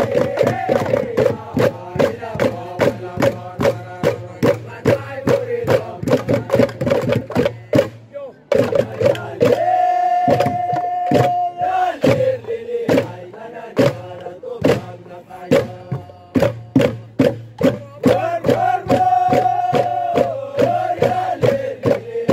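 A group chanting the Langoron dance song in unison over a fast, even percussive beat of about three to four strikes a second. The voices hold a long high note about ten seconds in and again near the end.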